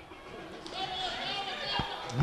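Faint, distant voices shouting and chattering, with a wavering pitched call in the middle.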